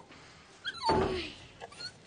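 Doberman puppy whimpering: a few short, faint whines, then one louder breathy cry falling in pitch about a second in.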